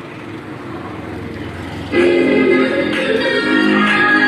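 Music played loud through a motorcycle's handlebar Bluetooth player, homemade 30-watt stereo amplifier and four-inch speakers. It opens with a rising swell, and about two seconds in the full music comes in with sustained chords.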